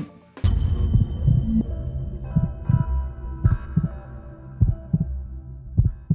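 TV channel ident music: a swish about half a second in, then deep heartbeat-like bass thumps, often in pairs, over a held synth chord.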